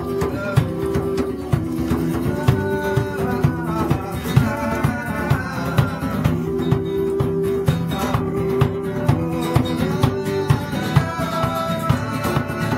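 Acoustic band playing: a strummed steel-string acoustic guitar and an acoustic bass guitar over a steady hand-drum beat, inside a stone-lined well.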